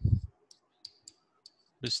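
A short low thump at the very start, then a few faint, sharp clicks at irregular intervals, made while words are handwritten into a computer whiteboard program with a pen input device. A man's voice starts speaking again near the end.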